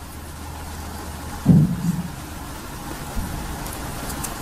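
Steady hiss of background noise, with a brief low thump about a second and a half in.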